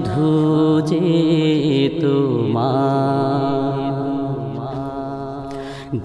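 Bangla Islamic gojol: voices singing long held notes between lyric lines over a steady low drone, with no drums. It grows slowly quieter toward the end, just before the next line begins.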